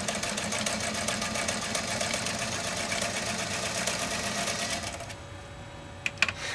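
American Beauty sewing machine stitching through two layers of heavy-grade leather, a rapid, even run of needle strokes at a steady speed that stops about five seconds in. The machine does not slow or labour on the thick leather.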